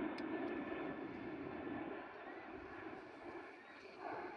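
Steady low drone of a distant engine, slowly fading away under outdoor ambience.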